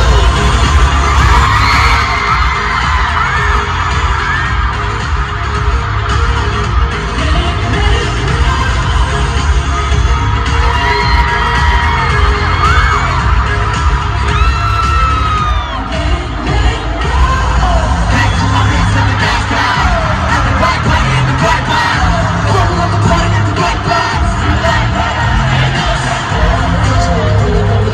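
Concert sound system playing a pop dance track with a heavy, thumping bass beat. Fans' screams rise and fall over it throughout.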